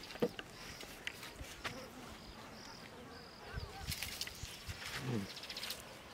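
Hands working soil and vegetation: scattered clicks and snaps, with bursts of rustling and scraping about four seconds in and again near the end. Underneath, short high chirps repeat regularly.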